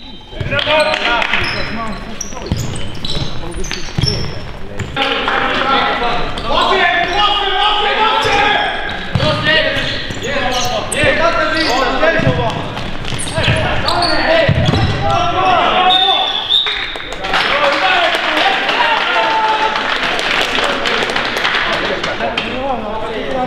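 Indoor futsal game in a large sports hall: players' shouts and calls mixed with the thuds of the ball being kicked and bouncing on the hard court floor.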